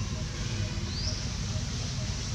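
Steady outdoor background noise with a low rumble, and one short, high, rising chirp about a second in.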